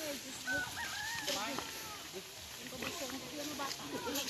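A rooster crowing once, a call of a little over a second starting about half a second in, over people's voices.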